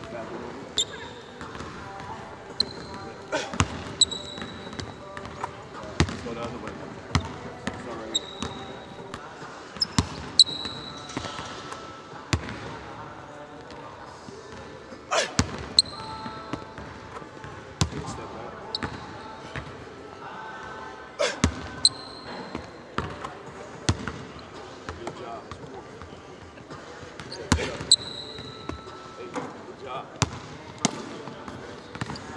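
Basketball bouncing on a hardwood court in irregular, sharp thuds, with short high sneaker squeaks in between, in a large hall.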